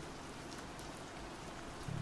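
Steady rain ambience, a soft even hiss with no distinct drops or thunder, laid under the narration as a background bed.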